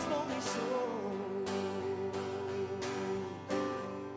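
Live band playing, led by strummed acoustic guitar with keyboard and drums, while one long note is held over most of the passage.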